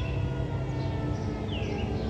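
Small birds chirping: short, curling, falling calls, a few each second, over a steady low rumble of outdoor background noise with a faint steady hum.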